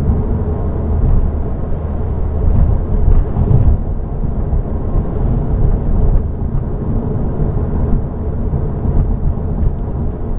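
Steady low rumble of road and tyre noise heard inside a Volkswagen Mk7 GTI's cabin while it drives along.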